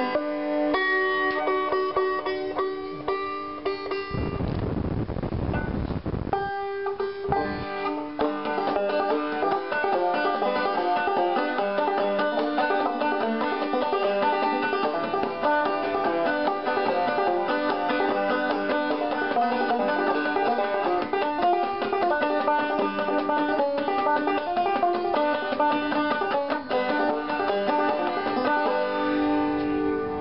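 Five-string banjo played capoed, its fifth string hooked under a homemade railroad-spike capo, in a steady run of quickly picked notes. About four seconds in, a rush of noise lasts some two seconds.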